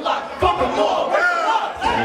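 Several voices shouting together, a crowd with a rapper's voice on the microphone.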